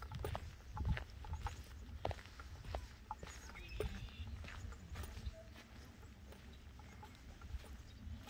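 Footsteps on a gravel trail, a soft crunch about every half second, over a low rumble of wind on the microphone.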